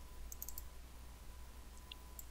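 Faint computer mouse clicks: a quick cluster of three or four about half a second in, and one more near the end, over a steady low electrical hum.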